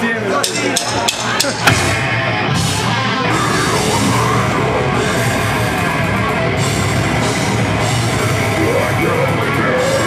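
Metal band playing live on drum kit and distorted electric guitars: a few sharp separate hits, then the full band kicks in a little under two seconds in and keeps playing, loud and dense.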